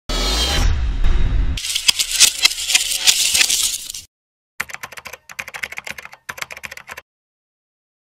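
Logo-intro sound effect of keyboard typing clicks in two runs, the first rapid and the second sparser after a short pause, opening with a low rumbling whoosh. The clicks stop about a second before the end.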